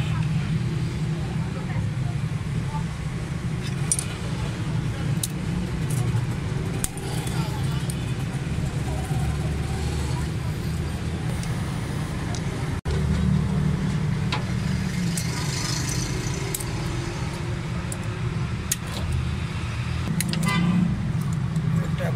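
Suzuki Alto 1000cc carburetted engine running steadily at idle with its valve cover off, with scattered light metal clinks of a spanner on the rocker-arm adjusters as the tappets are set.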